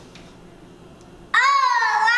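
Quiet room tone, then, about a second and a half in, a young girl's loud, drawn-out vocal call begins, her voice holding long and sliding in pitch.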